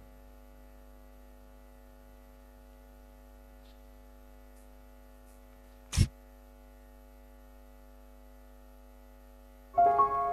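Faint, steady hum made of several held tones. About six seconds in, one short burst as a hand-pump spray bottle of disinfectant is squirted onto the microphone. Keyboard music starts just before the end.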